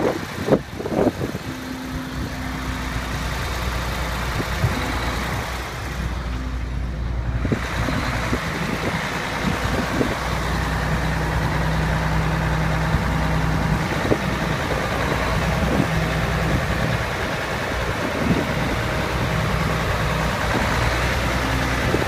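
Heavy truck's diesel engine idling steadily, a constant low hum under traffic hiss, with a couple of sharp knocks in the first second.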